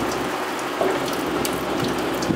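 Engine coolant draining from a Subaru WRX's radiator through the disconnected lower hose, falling in thin streams and splashing steadily into a drain pan.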